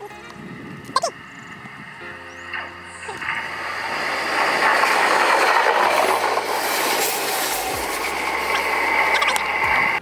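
A passenger train passing close by on the track. Its rushing rail noise builds from about three seconds in and stays loud to the end.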